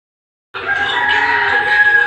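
A rooster crowing: one long, steady call that starts abruptly about half a second in, after a moment of silence.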